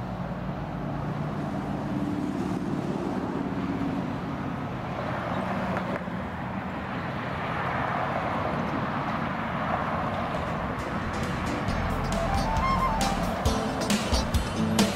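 Background music with steady low tones, mixed with the rushing noise of a twin-engine business jet on final approach, which swells through the middle and grows louder near the end.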